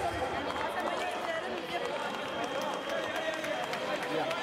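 Indistinct overlapping voices and chatter echoing in a large sports hall, with a thin steady high tone underneath and occasional light taps.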